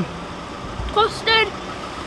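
Steady background traffic noise from the road and car park, with a short high-pitched voice about a second in.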